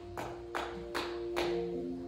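Soft instrumental church music: sustained keyboard chords held and changing slowly. In the first second and a half, four sharp taps come at an even pace, about 0.4 s apart.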